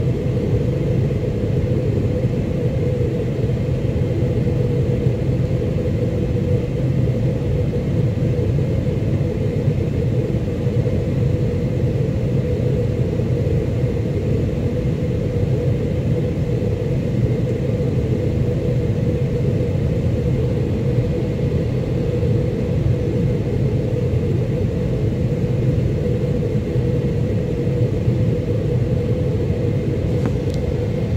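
Boeing 777-300ER cabin noise in flight beside the wing: the GE90-115B turbofans' steady deep rumble and rushing airflow, with a faint steady high whine over it.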